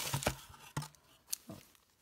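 Hand rummaging through crinkle-cut paper shred filler in a cardboard box: rustling and crinkling with a few short taps, dying away near the end.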